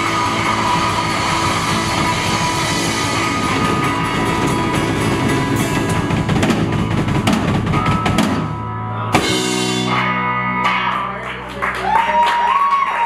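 A live country band, with guitars, bass and drum kit, plays the end of an instrumental passage. About nine seconds in, the playing stops on one hit and a chord is left ringing.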